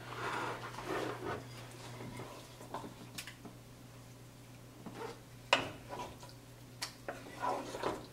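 A wooden spoon scooping thick egusi soup from a metal pot into a ceramic bowl: soft scraping and a few sharp knocks of spoon against pot and bowl, the loudest about five and a half seconds in. A steady low hum runs underneath.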